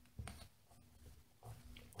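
Faint pen strokes scratching on paper, with a short stroke just after the start and another about a second and a half in, and near silence between.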